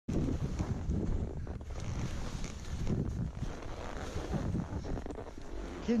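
Wind buffeting a helmet-mounted action-camera microphone as a skier glides down a snowy trail, with the skis sliding over the snow. A man's voice begins right at the end.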